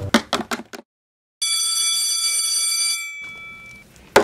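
A few quick taps in the first second. Then, after a brief gap, a school bell sounds as one steady buzzing ring of about two seconds that trails off.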